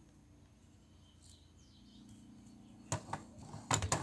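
Faint bird chirps in a quiet room, then, about three seconds in and again just before the end, sharp clicks as the plastic lid of an electric sandwich grill is handled and lifted open.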